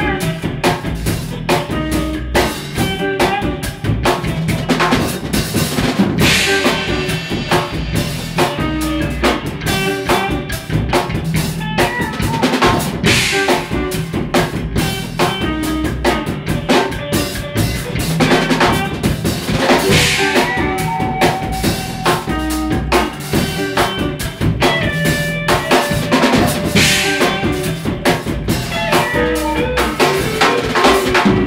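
Live instrumental rock jam by an electric guitar and drum kit duo: busy drumming on snare and bass drum under electric guitar lines. A bright cymbal wash comes roughly every seven seconds.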